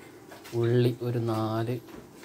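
A person's voice speaking, two short stretches of talk starting about half a second in.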